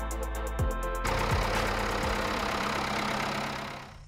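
Background music with a steady beat for about the first second, then an abrupt cut to a Ford 5000 tractor's engine running steadily, fading out just before the end.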